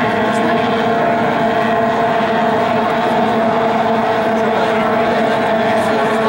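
A pack of J-class racing hydroplanes' outboard engines running together at racing speed: a steady, even drone with several held tones.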